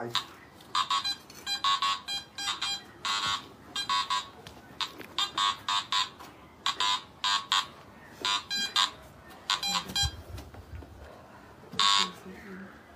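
Metal detector beeping again and again as its coil is swept back and forth over the ground, with short electronic tones coming in quick runs and pairs.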